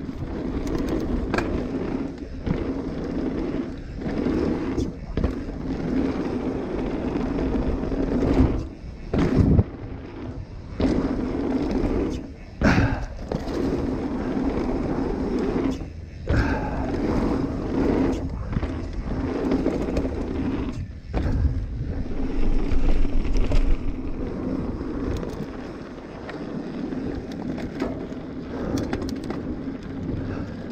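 Mountain bike rolling down a dirt singletrack: knobby tyres rumbling over dirt and leaf litter, with frequent knocks and rattles from the bike as it hits bumps.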